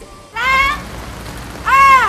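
A high-pitched voice calls out twice, briefly, about half a second in and more loudly near the end, the second call falling in pitch, over a steady noisy outdoor background.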